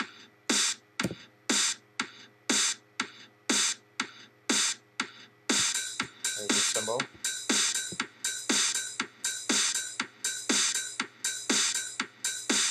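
Software drum-machine beat from Reason's Kong drum designer looping at 120 BPM, kick and snare strikes about twice a second. A hissy hi-hat and shaker layer joins about five and a half seconds in, as Kong's outputs 3 and 4 get wired to the mixer.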